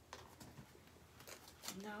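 A few faint, short clicks and rustles of hands handling tarot cards on a table, then a woman's voice near the end.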